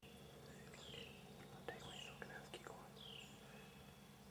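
Faint outdoor woodland ambience: a bird calls with short downward-slurred chirps, about one a second, over a low steady hum, with a few faint clicks and soft whispering.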